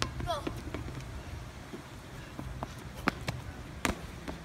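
A child's sneakers hitting asphalt as he runs, heard as scattered short, sharp footfalls over a low steady outdoor background.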